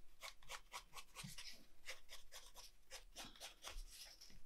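Pencil drawing on a cardboard toilet paper tube: a faint, quick run of short scratching strokes as the line is drawn.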